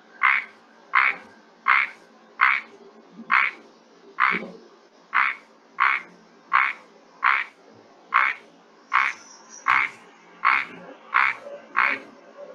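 Recorded advertisement calls of the red narrow-mouthed frog (Microhyla rubra), played back: a short call repeated at an even pace about every three-quarters of a second, some sixteen times.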